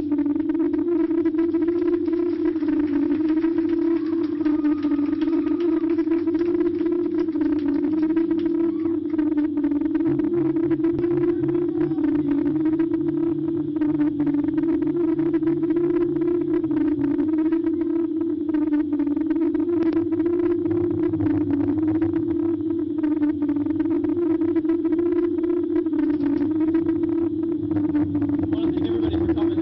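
Sustained feedback drone from an electric guitar rig, a loud steady tone whose pitch wavers slowly, with a lower bass note held for several seconds in the middle.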